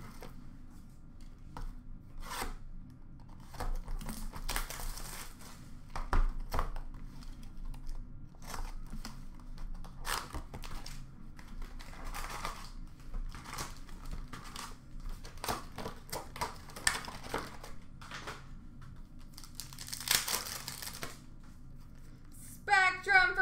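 Plastic wrapping and foil card packs being torn open and crinkled by hand, in irregular short bursts of ripping and rustling with a longer rip near the end. A single knock about six seconds in.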